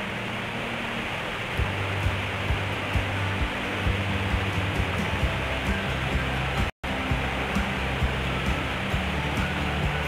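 Steady roar of a large waterfall, with background music carrying a low, regular beat of about two pulses a second. The sound cuts out for an instant about two-thirds of the way through.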